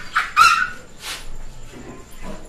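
A dog barking: three short barks in the first second or so, the second the loudest.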